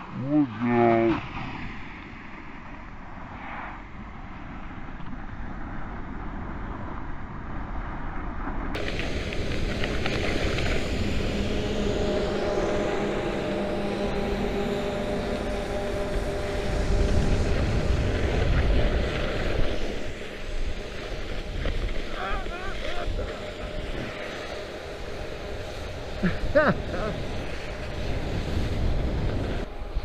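Skis of a ski trikke sliding and scraping over icy, hard-packed snow on a downhill run, with wind rushing over the camera microphone. The hiss becomes louder and brighter from about nine seconds in.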